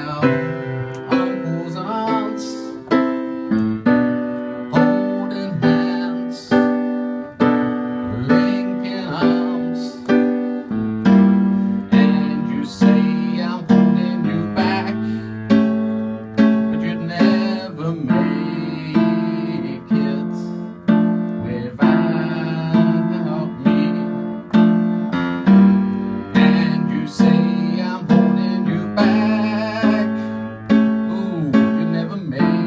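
Grand piano played live: repeated struck chords, roughly one a second, each ringing and dying away before the next. About eleven seconds in, a lower bass note joins and the chords grow fuller.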